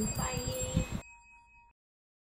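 Women's voices for the first second over a bright, steady chime-like ringing that fades and then cuts off suddenly a little before the end, leaving silence.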